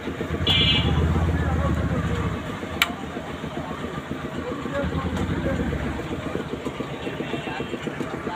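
An engine idling with a steady low throb, louder for the first two seconds or so, with a single sharp click about three seconds in.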